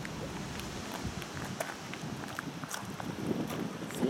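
Footsteps on gravel: faint, irregular crunches and clicks over a steady background hiss.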